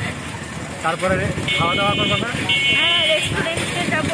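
Two short, high, steady vehicle-horn beeps about a second apart, heard over people talking and street noise.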